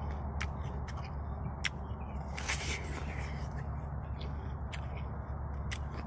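Mouthful of crisp snow pear being chewed close to the microphone: a few scattered short crunches over a steady low background hum.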